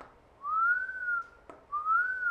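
A man whistling two short pure notes, each gliding up and then back down, with a brief click between them.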